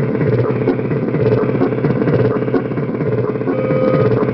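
Distorted electronic drum beat from a circuit drum, a dense, fast repeating pattern of hits. A steady tone comes in near the end.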